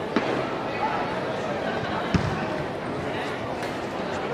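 Background chatter of a crowd of onlookers, with two sharp thuds about two seconds apart; the second is deeper and louder.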